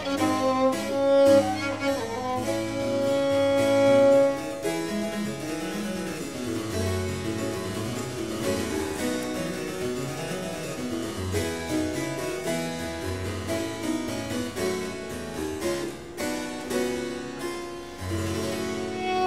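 Harpsichord and gut-strung baroque violin playing baroque chamber music. The violin holds long notes over the harpsichord for the first few seconds, then the harpsichord comes to the fore with quick runs of plucked notes, and the violin is heard strongly again near the end.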